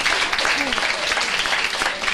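Audience clapping, with voices talking over it.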